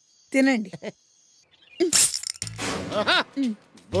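Film dialogue: short spoken lines with a pause between them, then background music coming in. About two seconds in there is a short, sharp crash-like noise.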